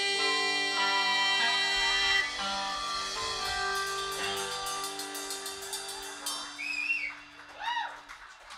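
A live rock band's closing chord: electric guitars and bass struck together and left ringing, slowly fading away. In the middle a fast high rattle runs over it, and near the end a few short swooping notes sound before it dies out.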